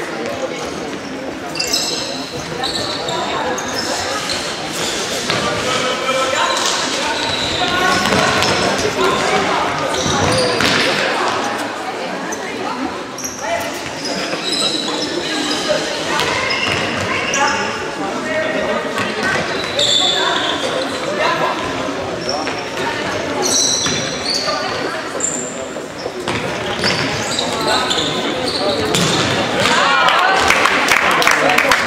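Indoor football match on a sports-hall floor: the ball being kicked and bouncing in short sharp knocks, with players' shouts and calls over it, all echoing in the large hall.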